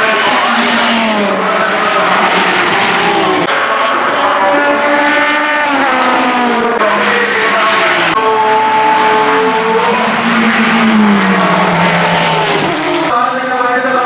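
Racing saloon cars' engines running hard as they pass one after another, each engine note falling in pitch as it goes by, with sudden jumps from one pass to the next.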